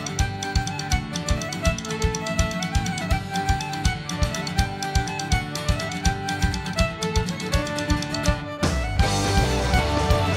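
Celtic rock band playing an instrumental passage: fiddle carrying the melody over a steady kick drum and bass. Near the end, cymbals crash in and the band plays louder.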